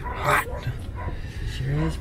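A dog gives one short bark about a third of a second in, over a low steady rumble.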